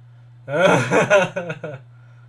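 A man laughing: a short burst of laughter about a second long that breaks into a few quick pulses near its end.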